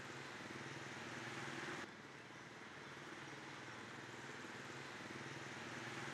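Faint, steady outdoor background noise like distant traffic, with a low hum. It steps down slightly in level a little under two seconds in.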